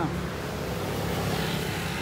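A steady low mechanical hum, like an engine running, under an even background haze.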